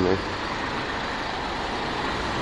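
Steady city street traffic noise, an even hiss and rumble with no single vehicle standing out.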